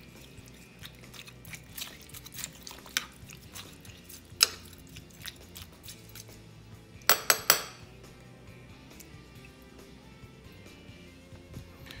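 A metal spoon stirring through a crock pot of raw ground meat, vegetables, rice and crushed eggshells, knocking and clinking against the crock now and then. One sharp clink comes about four seconds in and a quick run of about four comes around the middle.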